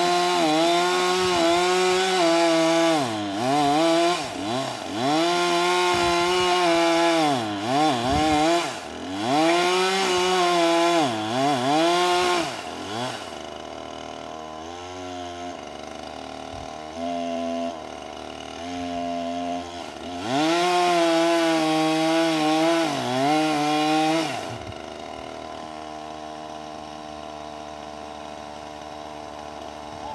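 Chainsaw cutting into a tree trunk, its engine pitch repeatedly dropping as the chain bites and climbing again. About halfway through it falls back to a lower idle with a few short revs, cuts again for several seconds, then settles to idle for the last five seconds.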